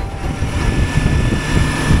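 Kawasaki Versys-X 300 parallel-twin motorcycle engine running on the move, with heavy wind noise on the rider's microphone.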